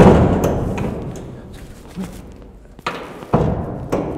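Steel deck hatch on a battleship being handled and swung open: two heavy metal thuds, one at the start and one a little over three seconds in, each ringing away in the steel compartment, with a lighter knock and clicks between them.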